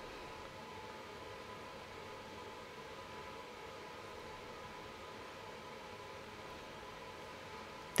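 Quiet room tone: a faint, steady hiss with a thin, unchanging hum running under it.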